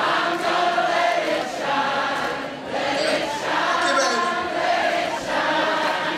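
Many voices singing together, loud and sustained, over crowd noise.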